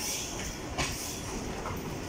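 ICF-built electric multiple unit local train pulling slowly into the platform, its wheels rumbling steadily on the rails. There is a short hiss at the start and one sharp click just under a second in.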